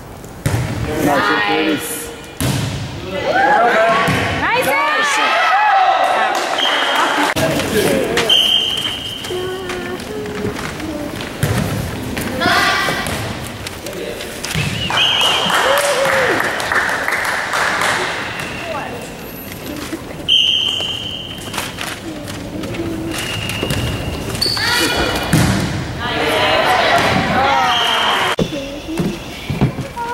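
A volleyball is struck and bounces again and again on a wooden gym floor. Children's voices shout in the large hall, and several short high squeaks are heard.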